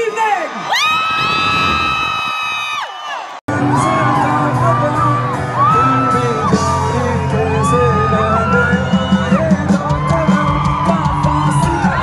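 A long held shout at first. Then, after a sudden break about three seconds in, a live band plays with a strong bass line while the crowd whoops and cheers over it.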